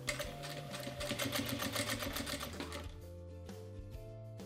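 Sewing machine stitching bias binding onto fabric in a fast, even run of stitches that stops about three seconds in.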